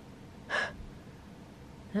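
One short, breathy gasp from a person about half a second in, over faint room tone.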